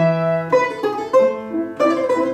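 A plucked Russian folk string instrument playing a quick melody over piano accompaniment, several notes a second.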